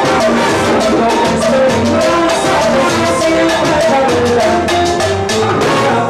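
Live salsa orchestra playing, with a busy, steady percussion rhythm under sustained pitched instrument lines.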